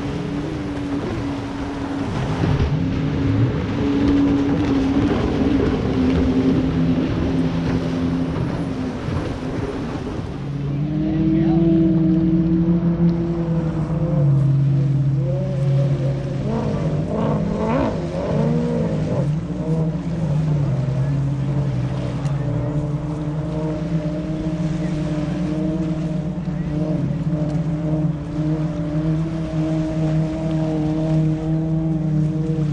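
Racing jet ski engines running hard offshore, their pitch rising and falling as they speed along and turn. About ten seconds in the sound changes to a steadier drone of held tones.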